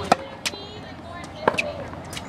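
Tennis ball struck by racquets and bouncing on a hard court during a rally: a few sharp pops, the loudest near the start and about a second and a half in.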